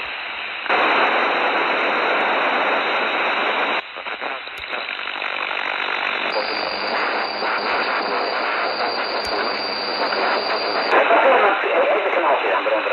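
Receiver audio from a CB radio channel on 27.100 MHz FM: loud radio hiss and static that jumps abruptly in level and tone several times, about a second in, near four seconds, about six seconds in and near eleven seconds. A few sharp clicks come through, and garbled voice begins to come through near the end.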